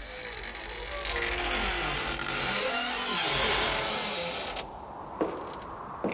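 A long, slow, wavering creak of a door swinging open, a horror-style sound effect, which stops suddenly about four and a half seconds in; a single heavy step follows near the end.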